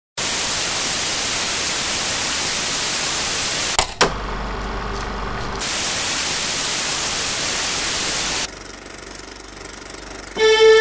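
Analog television static: a loud, steady white-noise hiss. Just under four seconds in, two sharp clicks break it, followed by about a second and a half of quieter hiss with a low hum. The loud hiss then returns and drops to a faint hiss near the end.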